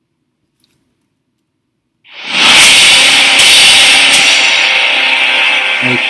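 A spaceship sound effect from the trailer soundtrack: a loud, steady rushing noise that swells in about two seconds in, after near silence.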